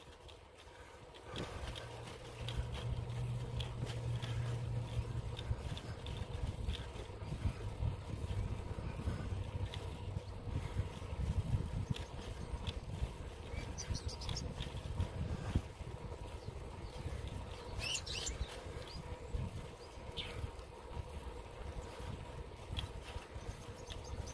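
Footsteps of a person walking on an asphalt road, with a low rumble on the microphone from handling and air movement.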